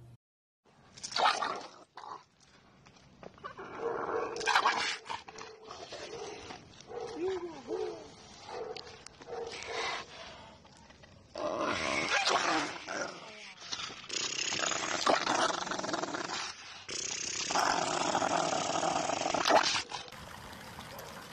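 American Bully dog growling and snarling in uneven bursts, mixed with people's voices.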